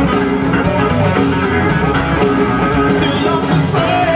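A live blues-rock band playing loud and steady on electric guitar, electric bass and drums.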